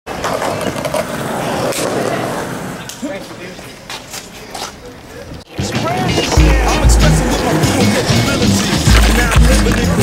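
Skateboard wheels rolling on concrete, with a few clacks, for the first half. After a sudden cut about halfway through, a hip-hop beat with heavy bass kicks starts and runs on.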